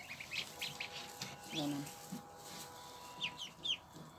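Muscovy ducklings peeping: scattered thin, high chirps, then a run of quick falling peeps near the end.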